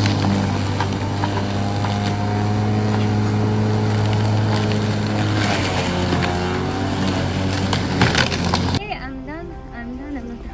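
Electric walk-behind rotary lawn mower running steadily as it is pushed through long grass, its hum dropping a little in pitch about halfway through. It switches off suddenly near the end.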